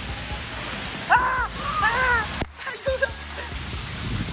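Water spraying and splashing in a water-park play structure, a steady rushing hiss. Two short high-pitched sounds that rise and fall come over it about a second in and again about two seconds in, and the sound breaks off sharply for a moment about halfway through.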